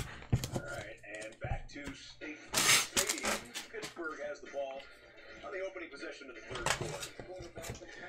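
Glossy trading cards being handled and shuffled by hand, with a run of light clicks and a louder rustle about two and a half seconds in. Faint music and talk run underneath.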